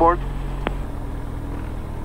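Diamond DA40's piston engine running at taxi power, heard in the cockpit as a low steady drone, with one sharp click about two-thirds of a second in.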